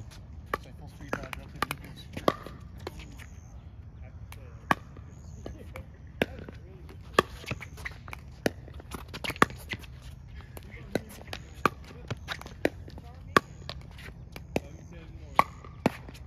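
Pickleball paddles hitting a hard plastic ball in a volley rally: sharp pops at an uneven pace, about one or two a second, some loud and close, others fainter from neighbouring courts.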